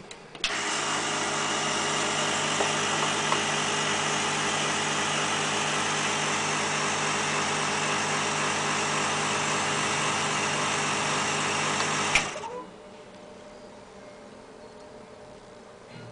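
Vacuum pump of a Vacuum Former 725 FLB switched on, running steadily with a rushing noise over a hum as it draws the heated styrene sheet down onto the mould. It cuts off abruptly about twelve seconds in, leaving a faint hum.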